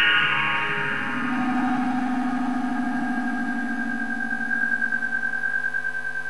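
Electronic dance music in a beatless breakdown: sustained synthesizer tones hold after a falling sweep fades out in the first second. From about two-thirds of the way through, the tones pulse quickly in loudness.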